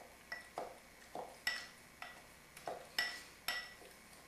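Muddler knocking against the bottom of the glass half of a cocktail shaker while crushing fresh honeydew melon cubes, about two uneven strokes a second. The glass rings briefly with each knock.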